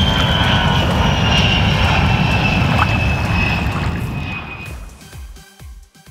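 A loud, steady rumbling noise with a high whistle that slowly drops in pitch, fading away over about the last two seconds, with faint music ticking underneath as it dies out.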